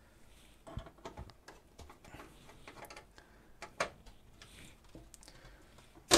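Faint, irregular clicks and light taps of hands working on a desktop PC case and its parts.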